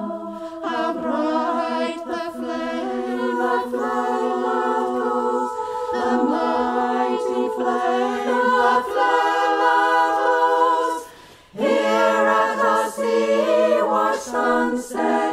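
Women's choir singing a cappella in harmony, several held voice parts moving together, with a brief break about eleven seconds in before the voices come back in.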